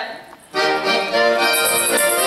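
Accordion music starting up about half a second in after a brief lull, full chords of held reedy notes. A high, rhythmic jingle joins about a second and a half in.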